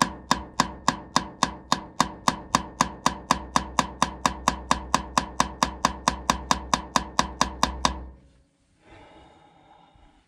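Hand hammer rapidly tapping a chisel against a sheared-off track roller bolt, metal on metal at about four strikes a second, driving the chisel's corner into the stub to try to turn it out. The tapping stops about eight seconds in, leaving faint handling noise.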